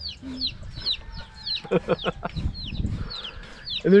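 Baby chicks peeping: short, high cheeps that fall in pitch, about three a second.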